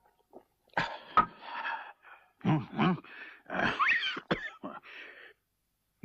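A person coughing and clearing the throat in a series of short, rough bursts over about four seconds, with a sharp click about a second in.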